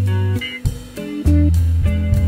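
Background music: a guitar-led track with a drum beat.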